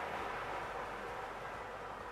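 Lottery draw machine mixing its numbered balls in a clear plastic drum: a steady rushing noise that eases off slightly.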